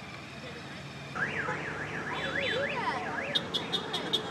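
A car alarm going off: a tone sweeping up and down about three times a second starts just over a second in, then switches near the end to rapid chirps, about five a second.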